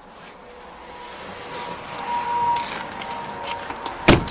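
Rustling and handling noise of a person moving about and climbing out of a pickup's cab, growing louder, with a run of small clicks in the second half over a faint steady tone.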